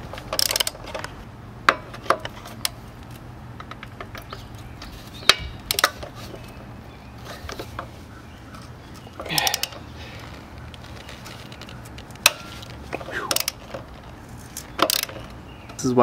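Socket ratchet clicking in short bursts, with metal clinks of wrenches, as a stubborn engine mounting nut on a Puch Maxi moped is worked loose. The nut is hard to break free because it was set with blue Loctite.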